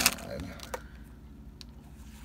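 Pokémon trading cards being handled and flipped through, making a few light clicks as the cards slide and snap against each other: one at the start, one under a second in, and a fainter one about a second and a half in.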